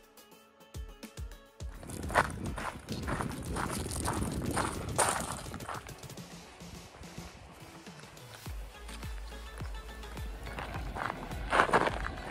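Background music with a steady beat for the first couple of seconds, then footsteps on a gravel trail at an even walking pace. Wind rumbles on the microphone from about two-thirds through, and a louder knock comes near the end.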